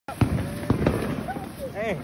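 Fireworks going off: several sharp cracks and pops in the first second over a continuous crackling haze.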